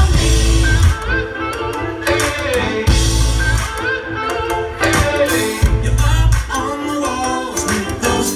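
Live band playing a song: male and female singing over electric guitar and drums, with deep bass notes coming back about every three seconds, heard from the crowd in a small club.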